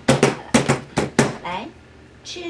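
A woman laughing in a quick run of short bursts, dying away about a second and a half in.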